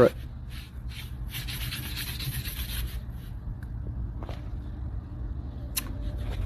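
A gloved hand rubbing and scraping across the tread of a worn car tyre: a scratchy rubbing that is strongest between about one and three seconds in.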